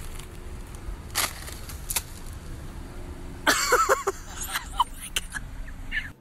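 Car engine idling with a steady low rumble, heard from inside the car, while an ostrich pecks at a paper bag held out of the window, giving sharp taps and rustling. A loud burst of rustling and a person's voice crying out comes about three and a half seconds in.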